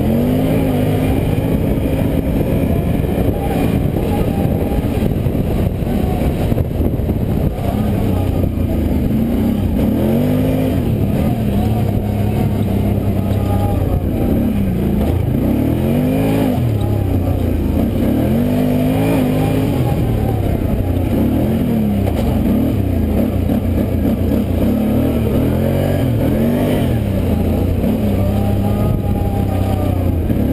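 Quad (ATV) engine under race throttle on a dirt track, revving up and dropping back again and again as the rider opens and closes the throttle through the turns and straights.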